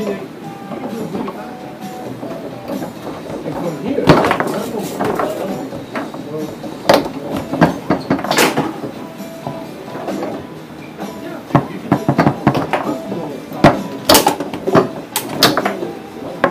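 Foosball being played: sharp irregular cracks of the ball struck by the plastic men and hitting the table walls, with rods clacking, over steady background chatter of voices.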